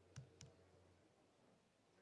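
Near silence with two faint, sharp clicks about a fifth of a second apart, from a laptop being worked.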